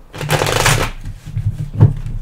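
A deck of tarot cards shuffled by hand: a dense flurry of card rustling through most of the first second, then a few soft knocks of the cards in the hands, the strongest near the end.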